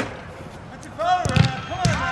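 A soccer ball struck hard: a single sharp thump about a second and a half in, between short shouts from the players.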